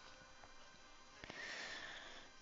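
A faint breath drawn through the nose, starting about a second in and lasting most of a second, over near-silent room tone.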